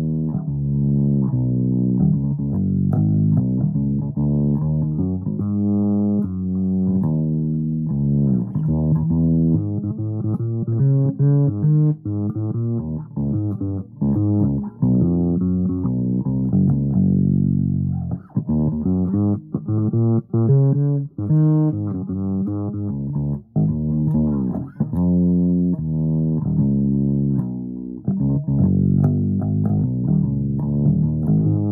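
Fretless electric bass played solo with the fingers, a steady run of plucked notes with short breaks between phrases. About seventeen seconds in, one note slides down in pitch.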